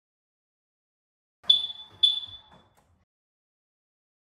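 A car's electronic chirp sounding twice, about half a second apart: two short, high beeps, each fading quickly, with faint low clunks underneath.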